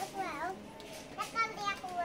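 A child speaking in two short, quiet phrases, over a faint steady hum.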